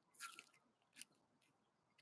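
Near silence, broken by two faint, brief crackles about a quarter second and a second in.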